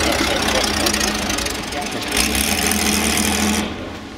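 Porsche 917LH's air-cooled flat-12 running steadily at low revs, loud, then dropping away abruptly near the end.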